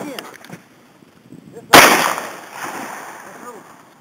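A single shotgun shot about two seconds in, very loud and sudden, its report dying away over about a second.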